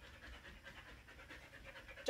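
A dog panting faintly, in quick, even breaths.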